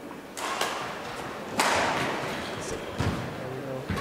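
Badminton rally in a large sports hall: rackets striking the shuttlecock, one hard hit about one and a half seconds in, and players' feet thumping on the court.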